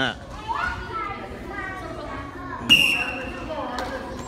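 Children's voices shouting and calling out in a large room. About two-thirds of the way in comes a sudden loud, high-pitched cry, held briefly.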